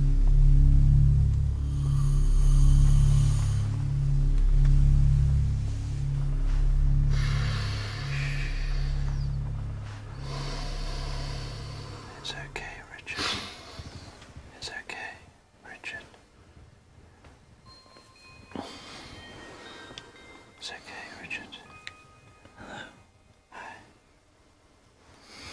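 Dark soundtrack music with a pulsing low bass that fades out about halfway through. Then comes quiet, broken by soft whispering and breaths and a few faint, short high tones.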